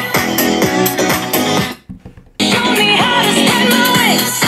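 Electronic dance track played back on small portable Bluetooth speakers for a sound comparison. The music cuts out for about half a second near the middle and then resumes.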